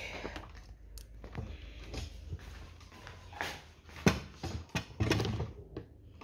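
Handling noise: irregular taps, knocks and rustles as things are picked up and moved, with a sharp knock about four seconds in.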